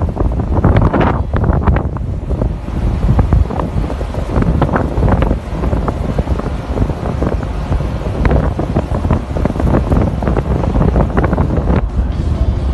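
Wind buffeting the microphone in irregular gusts on the deck of a moving ship, over a steady low rumble and the rush of water along the hull.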